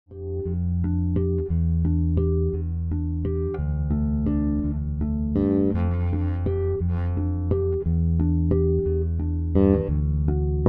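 Electric bass guitar strung with DR Dragon Skin+ strings, played fingerstyle: a continuous bass line of plucked notes, each with a sharp attack and a ringing low tone.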